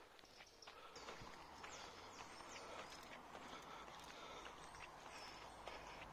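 Faint footsteps on a tarmac lane, with a few short high chirps of birds and a low rumble from about a second in.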